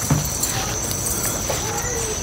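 Crickets trilling in one steady, high, unbroken tone.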